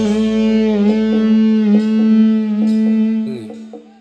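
Live dangdut band ending a song: electric guitar playing a closing phrase over a long-held ringing note. The sound dies away over the last second.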